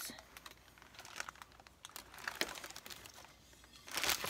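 Clear plastic packing wrap crinkling faintly, with a few scattered soft clicks and rustles as it is handled.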